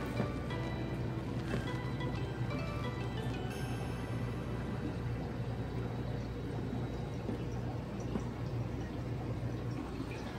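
Steady low hum of aquarium pumps and filters with water moving, and music playing faintly in the background.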